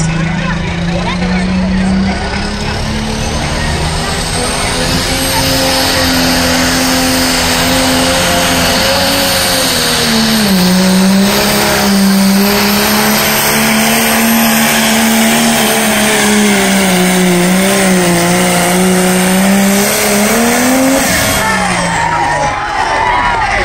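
A diesel pulling tractor's engine held at full throttle under heavy load as it drags a weight-transfer sled down the track, one continuous pull of about twenty seconds. A high whine rises over the first few seconds. The engine note sags about halfway, climbs again near the end, then falls away as the pull ends.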